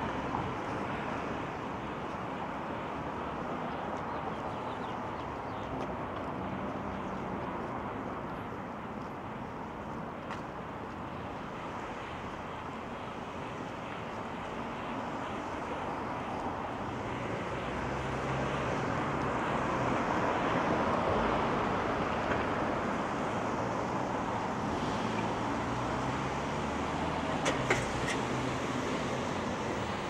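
Steady hiss of road traffic in a residential street. A car passes, swelling with a low rumble about two-thirds of the way through. A couple of sharp clicks come near the end.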